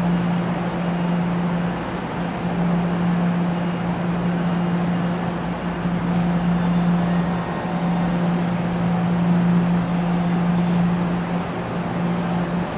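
NJ Transit multilevel commuter train rolling slowly through the station, with a steady low electric hum over the rumble of the wheels. Two brief high-pitched sounds come in the second half.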